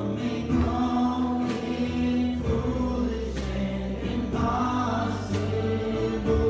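A youth choir of boys' and girls' voices singing a gospel worship song together, with instrumental accompaniment underneath holding steady low notes.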